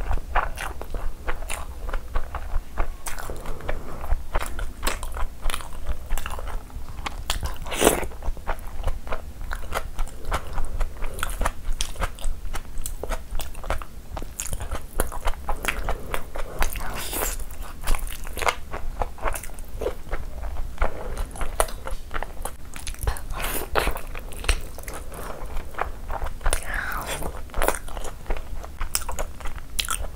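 Close-miked chewing of a mouthful of chicken biryani rice eaten by hand: a dense, irregular run of wet mouth clicks and smacks, several a second.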